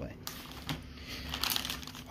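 Plastic bait packaging crinkling as it is handled, in short flurries about two-thirds of a second in and again near the end.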